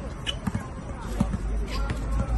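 A basketball bouncing on an outdoor court, a few separate bounces, with voices nearby.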